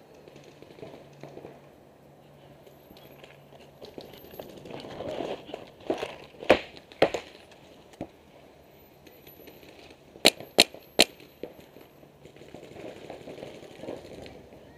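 Paintball marker shots: single sharp cracks about six to eight seconds in, then three quick ones in a row around ten to eleven seconds. Between them, the rustle of the player shifting behind an inflatable bunker.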